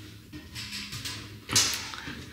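Footsteps climbing indoor stairs, soft thuds with one sharper step about one and a half seconds in.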